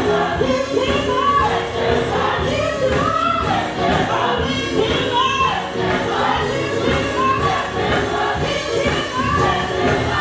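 A gospel mass choir singing with a live band, drums keeping a steady beat under the voices.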